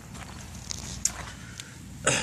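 Faint footsteps on gravel, with a few light crunches and ticks.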